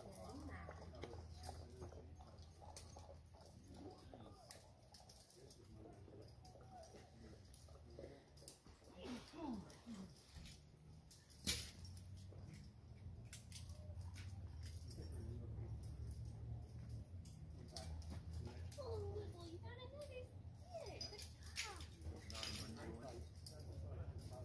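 Faint, distant voices talking over a steady low rumble, with scattered small clicks and one sharp click about eleven and a half seconds in.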